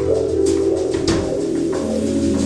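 Live band playing an instrumental passage of a reggae-rock song: sustained keyboard chords over bass and drum kit, with cymbal hits about half a second and a second in.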